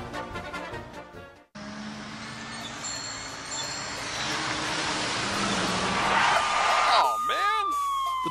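A music bumper fades out and cuts off, then a rush of road-traffic noise builds up. Near the end a police siren starts to wail, its pitch falling: sound effects opening a traffic-ticket radio advert.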